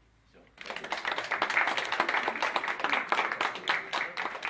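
A small audience applauding, the clapping breaking out suddenly about half a second in after a silence and going on steadily.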